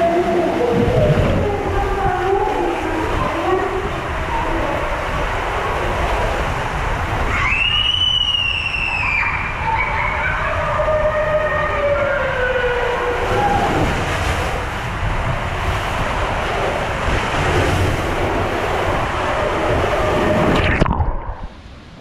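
Water rushing and a rider sliding at speed down an enclosed water slide tube, a loud steady rush heard up close, with wavering squeaks and a high squeal about eight seconds in. The rush cuts off abruptly near the end.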